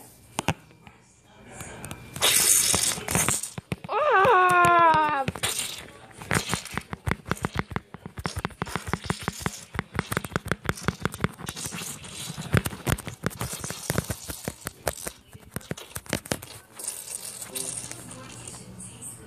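A staged eating scene: a short rustling burst, then a brief falling cry about four seconds in, followed by some ten seconds of rapid, irregular clicking and rattling as the shark toy pretends to chew.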